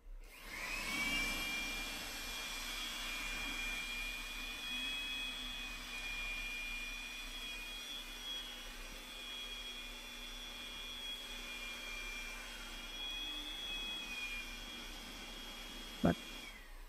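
Electric blower run from an inverter as a load on the battery, spinning up with a rising whine just after the start and then running with a steady high whine.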